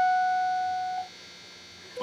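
Epiphone Les Paul electric guitar's B string fretted at the 19th fret, a single F# note ringing and fading steadily, then muted about a second in. The note is being checked against a tuner for intonation.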